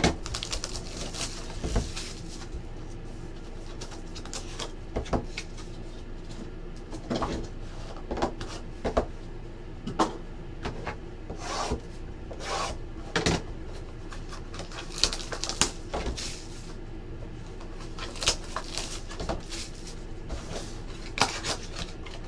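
Hands handling and opening a cardboard trading-card box: scattered short rubs, scrapes and taps of cardboard sliding and being set down on a table.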